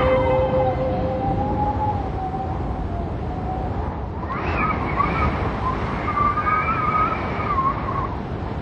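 Ambient outro of a hip-hop track: a steady rushing noise like surf under a single wavering, gliding tone, which rises to a brighter, higher wavering tone about four seconds in.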